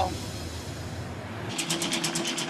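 A low steady hum that gives way, about one and a half seconds in, to a commercial planetary mixer running: its whisk beats in the steel bowl with rapid, even ticks, about ten a second, over a steady motor tone.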